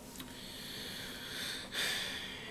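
A man breathing audibly through his nose, with a louder, sharp breath in near the end.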